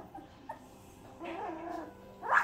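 A three-week-old puppy gives a short, wavering whimper a little over a second in.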